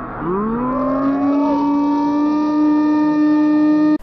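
A siren-like wail that winds up in pitch over about a second, then holds one steady tone and cuts off suddenly at the end.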